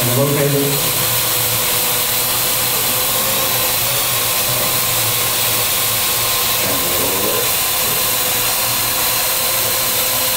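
Small quadcopter drone hovering, its four electric rotors giving a steady buzzing whine.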